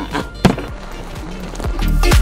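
Background music with a steady beat, a voice saying "three" at the start, and one sharp knock about half a second in. The music swells louder near the end.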